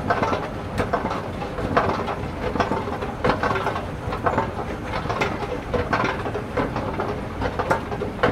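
A steady mechanical rumble with many irregular clicks and clatters.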